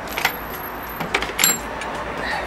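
A few brief clinks and rustles of small metal motorcycle clip-on hardware being handled in a plastic bag.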